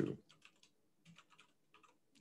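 Faint computer keyboard typing: a string of quick key clicks, with a short pause about half a second in before the clicking resumes.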